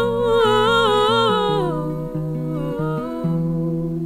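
A woman's wordless vocal melody over a plucked acoustic guitar. The voice steps through several notes and fades out before halfway, leaving the guitar playing a slow line of ringing low notes.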